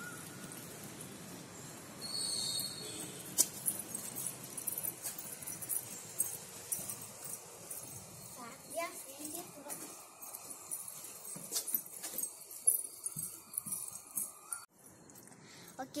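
Faint open-air background with distant, indistinct voices and scattered light clicks and taps.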